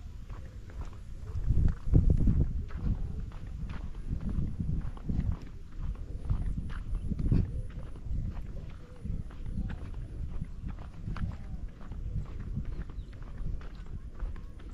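Footsteps of a person walking on a dry dirt path, about two steps a second, under low rumbling gusts of wind on the microphone that are loudest about two seconds in.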